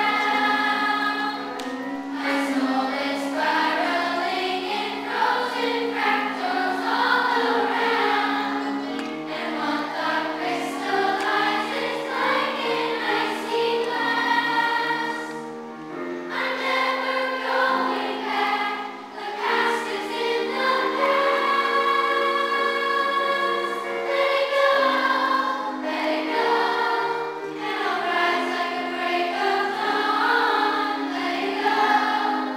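A children's school choir singing together in held, sustained notes, with brief breaks between phrases about halfway through and again a few seconds later.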